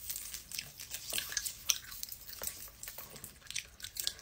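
A person chewing a crunchy snack close to the microphone: a run of irregular crisp crunches and mouth clicks.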